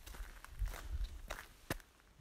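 Faint rustling and scattered light clicks over a low rumble, with one sharper click near the end.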